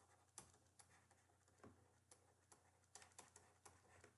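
Near silence with faint, irregular taps and clicks of a stylus on a tablet as handwriting is written.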